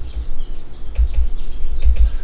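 Stylus writing on a tablet: faint short ticks and scratches of the pen on the screen, with several low thumps as it is handled.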